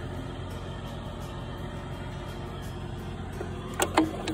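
Steady low drone of a machine engine running at idle, even in level throughout, with a constant low hum underneath.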